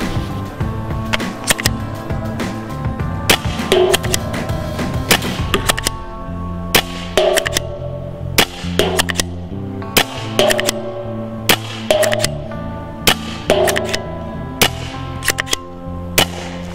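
Spyder Hammer 7 pump-action paintball marker firing single shots, roughly one a second. Paintballs smack into a round plastic target, some hits ringing briefly. Background music plays throughout.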